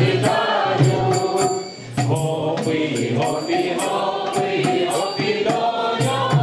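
A group of women's voices singing a carol (kolyadka) together, with a tambourine's jingles keeping time; the singing breaks briefly between lines about two seconds in.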